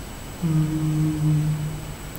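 A man humming one steady, level note, starting about half a second in and held for about a second and a half.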